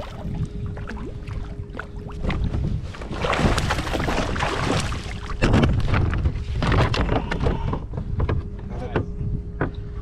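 Wind on the microphone and water moving against a kayak hull, with scattered sharp clicks and knocks of gear being handled in the kayak. A faint steady hum runs underneath.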